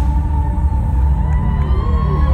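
A fireworks display: a continuous low rumble of shells bursting overhead, with a crowd cheering over it and music playing underneath.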